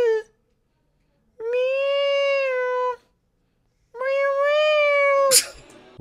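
A high, meow-like voice, the sock puppet's, holds three long notes at about the same pitch. Each lasts one to one and a half seconds, with short silences between, and a short noisy burst comes near the end.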